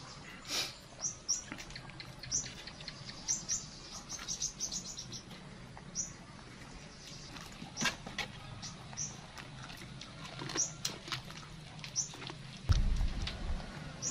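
Short high-pitched chirps of small birds, scattered throughout, with occasional sharp clicks from young macaques gnawing boiled corn cobs. A low rumble comes near the end.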